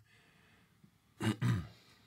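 A man clearing his throat: two short rough bursts a little over a second in, falling in pitch, over low room tone.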